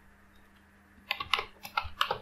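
Computer keyboard typing: a quick run of keystrokes beginning about halfway through, as a short search word is typed.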